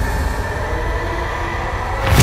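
Cinematic soundtrack bed: a steady low rumbling drone with faint held tones above it.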